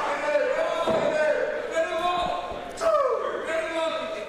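A long drawn-out shout held on one pitch for nearly three seconds, falling away near the end. Two dull thumps come through it about one and two seconds in.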